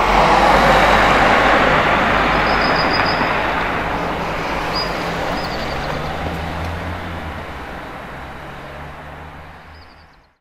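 Motor vehicle on the road: steady engine hum under dense tyre and road noise. It starts abruptly, then fades slowly away.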